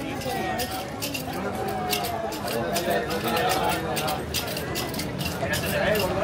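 Background chatter of people talking, not close to the microphone, with scattered light clicks.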